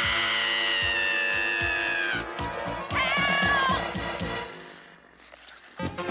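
A cartoon woman's long, high-pitched scream over music. The scream falls slightly in pitch and breaks off about two seconds in, followed by a shorter, wavering cry about a second later, then the music fades away.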